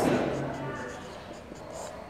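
Handwriting: a pen or marker scratching steadily across the writing surface as a calculation is written out, after a spoken word trails off at the start.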